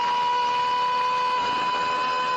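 A steady, high-pitched tone with overtones, held without wavering on one pitch, from a cartoon soundtrack.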